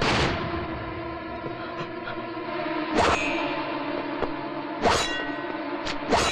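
Heavy metallic clangs, four in all spaced about two seconds apart, each leaving a long metallic ringing that hangs on between strikes.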